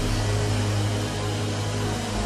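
A held keyboard chord under a large congregation praying aloud all at once, a steady wash of many voices.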